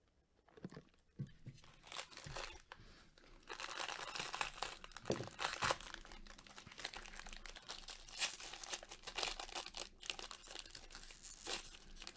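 A shiny wrapper on a Bowman Draft Super Jumbo baseball card pack being torn open and crumpled by gloved hands. Irregular crackles start about half a second in and thicken into steady dense crinkling after a few seconds.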